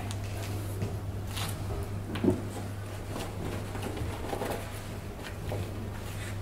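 Faint scattered clicks and rustles of hair and styling tools being handled, with a steady low hum underneath.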